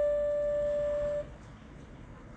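Piano's last held note ringing steadily, then cut off suddenly a little over a second in, leaving faint hiss.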